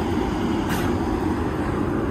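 Steady outdoor background rumble, with one faint brief scuff about a third of the way in.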